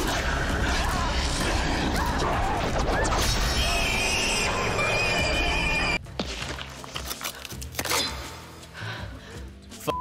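Film soundtrack of a fight with a cave-dwelling crawler: shrill creature screeching and human shouting over a dark score. It cuts off abruptly about six seconds in. The score then carries on quietly with a few sharp hits.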